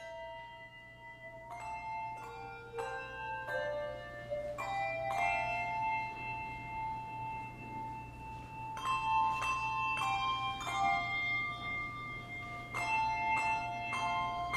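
Handbell choir ringing a slow piece: chords of handbells struck together and left to ring on, with a long held chord in the middle and fresh chords struck every second or two near the end.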